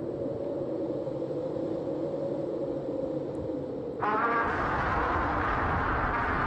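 A low, steady rumble from an animated kaiju scene. About four seconds in, a louder, rougher monster roar with a wavering pitch starts and carries on.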